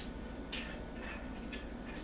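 A sharp click, then a few short, light scratching sounds from a nail polish brush and its glass bottle being handled.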